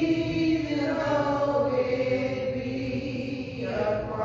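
A small church congregation singing a slow hymn, the voices holding long notes and sliding from one to the next.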